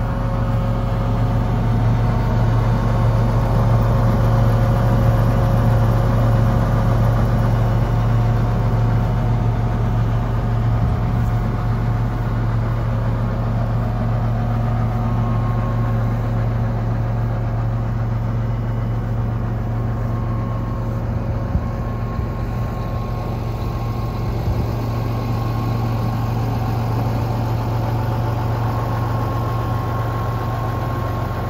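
John Deere 8320R tractor's diesel engine idling steadily, a low even hum.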